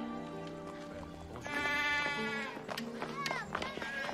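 Background music with farmyard animal calls over it: one long call starting about a second and a half in and dropping in pitch at its end, then several short squawking calls near the end.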